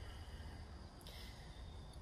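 Quiet outdoor background: a low steady rumble and faint hiss, with no distinct sound event.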